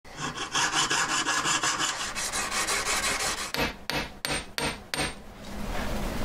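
Jeweller's piercing saw cutting through a small metal strip: quick, even rasping strokes, about eight to ten a second. Near the end come five slower, separate, sharper strokes, after which it goes quieter.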